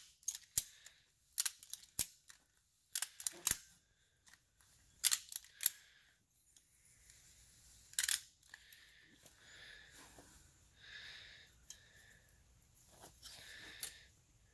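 Ratchet straps being cranked to compress a golf cart strut's coil spring: single sharp pawl clicks at uneven intervals through the first eight seconds or so, then faint rubbing and scraping as the strap and spring are handled.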